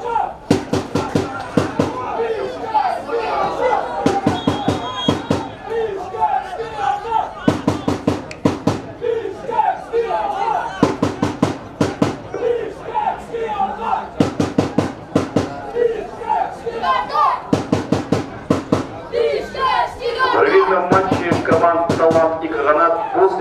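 A supporters' drum beaten in quick runs of strokes every few seconds, with voices over it.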